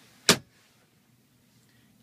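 Pickup truck's centre console lid shutting: one sharp knock about a third of a second in, then quiet cabin room tone.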